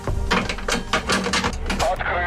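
Rapid clicking and rattling of a front-door lock as it is unlocked and the door opened, several clicks a second.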